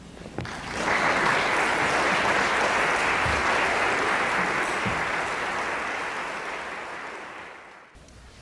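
Audience applauding in a hall. It swells about a second in, holds steady, then fades away near the end.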